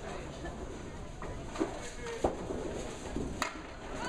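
Candlepin ball and pins: a few sharp wooden knocks, the first two about a second and a half and two and a quarter seconds in and a lighter one near the end, over a murmur of chatter in the bowling alley.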